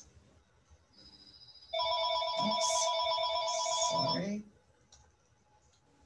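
Electronic phone ringtone ringing: several steady tones sound together for about two and a half seconds, starting a little under two seconds in, then stop suddenly.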